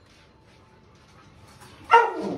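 A dog barks once, loud and sudden, near the end, after a faint stretch.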